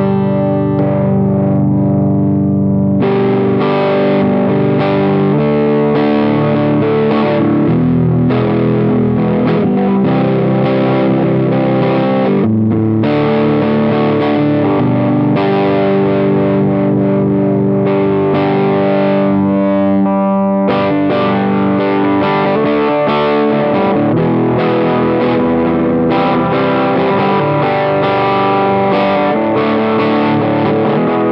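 Electric guitar played through an Analog Fox Green Muff fuzz distortion pedal, a Big Muff-style circuit, into a Benson Monarch amp: thick, distorted chords and riffs. A chord is held at the start, and another rings out for a couple of seconds about two-thirds of the way through.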